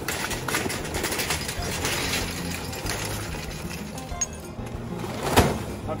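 Charcoal briquettes poured from a paper bag into a metal chimney starter, a dense clattering rattle that thins out after about four seconds, with one sharp knock near the end. Background music plays underneath.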